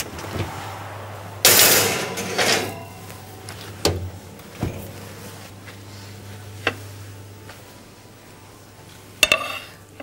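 Metal baking tray and oven door clattering and scraping, the loudest moment, as the cake goes into the oven. Then a few sharp single knocks of a plate being set on a marble countertop, over a low steady hum.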